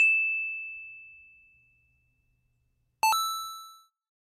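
Two chime sound effects: a bright ding right at the start that rings out over about a second and a half, then about three seconds in a second, fuller ding with several tones that fades within a second.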